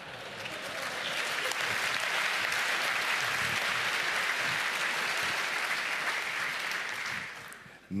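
Audience applauding in a hall, swelling over about the first second, holding steady, then dying away shortly before the end.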